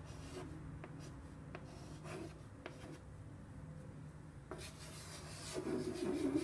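Chalk writing on a chalkboard: faint taps and short scratchy strokes as figures are written. Longer, louder strokes come near the end.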